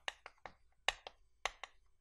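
Chalk writing on a blackboard: a string of short, sharp taps and clicks as the chalk strikes and lifts off the board, unevenly spaced, about eight in two seconds.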